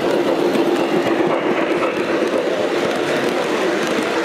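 O gauge model steam locomotive and passenger cars rolling past close by on three-rail track, a steady rumble of wheels on rails.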